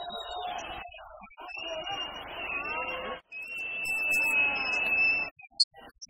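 A high steady whistle-like tone is held twice, first for about a second and a half and then, after a short break, for about two seconds, with voices going on beneath it. A sharp click comes near the end.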